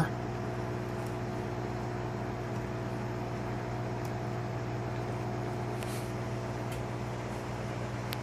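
Steady machine hum with a constant low note and a few fainter steady tones above it, unchanging throughout.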